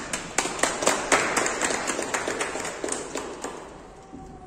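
A small audience clapping, starting sharply and thinning out to a few claps near the end.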